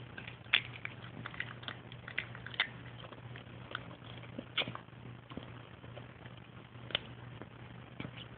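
A French bulldog's faint mouth sounds while begging for a sunflower seed: short, scattered smacks and clicks, a few seconds apart, over a low steady hum.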